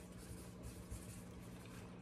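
Faint scratching of a pen on notepad paper as an answer is written, over a low steady room hum.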